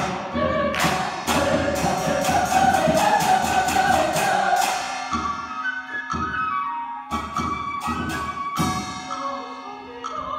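Mixed show choir singing a lively number with accompaniment, punctuated by sharp rhythmic hits that come thick and fast in the first half and thin out in the second.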